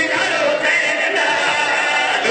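Several men's voices chanting a verse together into a microphone over a sound system, holding long notes, in the style of a Shia majlis recitation led by a zakir.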